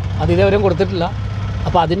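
A man talking, with a steady low engine hum underneath.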